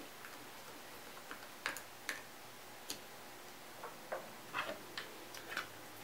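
Faint, scattered clicks and taps from handling small plastic instrument parts: a small screw being tightened into the battery cover and the faceplate being picked up. There are about a dozen separate ticks, several close together near the end.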